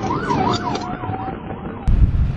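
Police car siren on a rapid yelp, its pitch rising and falling about four times a second, cut off suddenly near the end.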